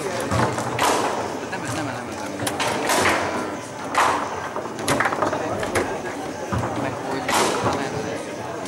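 Foosball in play: sharp knocks and clacks as the ball is struck by the plastic rod figures and hits the table, several loud hits spread irregularly through, over a murmur of voices.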